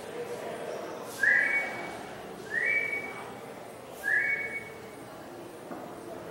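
Three short, high whistled notes about a second and a half apart, each sliding up briefly at its start and then holding steady.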